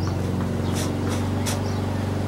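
A steady low hum with a pitched drone, and a few brief high chirps over it.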